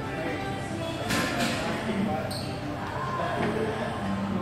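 Gym ambience: background music and people's voices in a large room, with a few sharp knocks from gym equipment, two about a second in and one just after two seconds.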